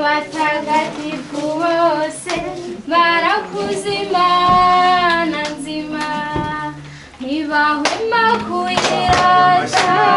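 High voices singing a melody together with held notes, and hand claps that come thicker in the second half.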